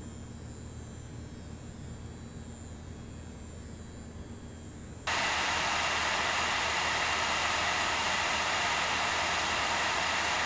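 Water-cooled Radeon RX Vega 64 gaming PC under full benchmark load: a quiet steady hum with a faint high whine. About five seconds in, it switches abruptly to the Vega 64's reference blower-style air cooler at full load, a much louder, steady rush of fan air, very loud.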